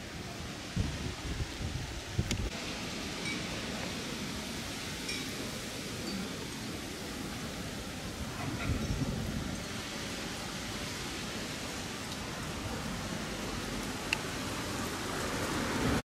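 Steady outdoor street noise with gusts of wind rumbling on the microphone, strongest about a second in and again around nine seconds in.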